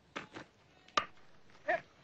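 Cricket bat striking the ball: one sharp crack about a second in, followed shortly by a brief shout.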